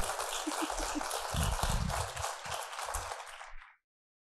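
Audience applauding at the end of a talk, cut off suddenly near the end.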